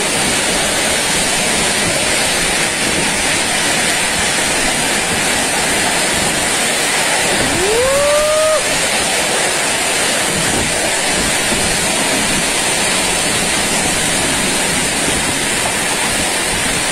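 Loud, steady rush of violent tornado wind driving heavy rain and hail. About eight seconds in, a person's voice rises in a brief exclamation.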